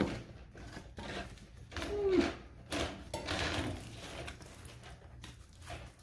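Flexible foil dryer vent duct crinkling and rustling in the hands as it is stretched and measured, with scattered light knocks.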